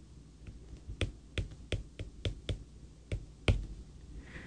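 Stylus tip tapping and clicking on a tablet screen while handwriting: about nine short, sharp taps at an uneven pace, roughly three a second.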